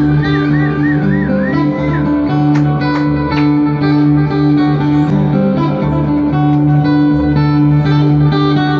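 Solo acoustic guitar played live through a PA in an instrumental passage. Low notes ring steadily under a busy picked melody, with a high wavering tone over it for the first two seconds.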